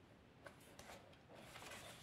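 Near silence, with faint handling noise from a leather holster turned in the hands: a light click about half a second in and a soft rustle in the second half.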